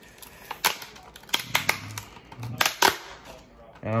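Clear plastic blister packaging crackling and snapping as it is pried open by hand: a string of sharp, irregular cracks, several close together near the middle.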